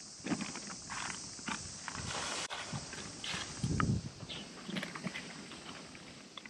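Plastic rustling and light irregular knocks as a black plastic bag is handled at a steel oil drum, with one louder dull thump a little before four seconds in.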